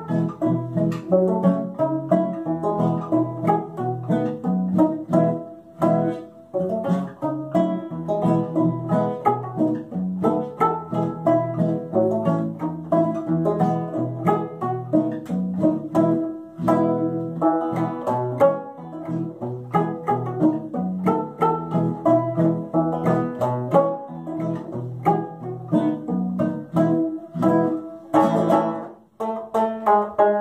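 A banjo and an acoustic guitar playing a polka together, the plucked notes running on with only a brief break just before the end.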